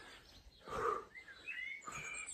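Birds chirping faintly: short high calls begin a little past halfway. There is a brief soft noise about a second in.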